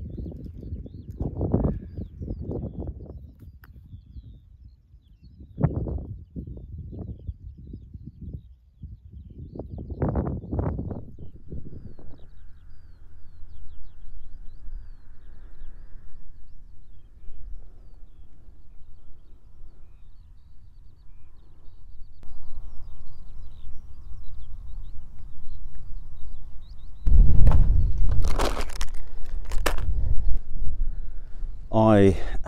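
Wind buffeting the microphone in irregular low gusts, easing for a while and then rising again. Faint bird chirps come through in the calmer middle stretch, and there is a loud burst of noise near the end.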